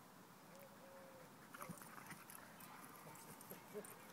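Near silence, with a few faint short tones and soft scuffs.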